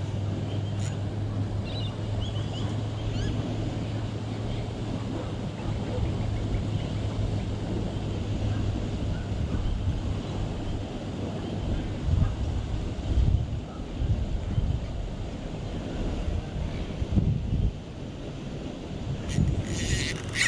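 Wind buffeting the microphone over a steady rush of water from a weir outflow, with a few stronger gusts in the second half.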